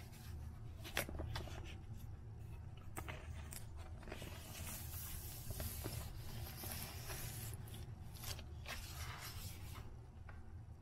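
A vinyl LP being slid out of its inner sleeve: a few handling clicks in the first seconds, then a long rustling slide of the disc against the sleeve, with a second shorter slide near the end.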